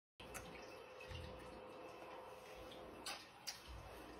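Great Dane licking a person's face: faint wet smacking of its tongue and mouth on skin, with a few sharper smacks, one just under half a second in and two more about three seconds in.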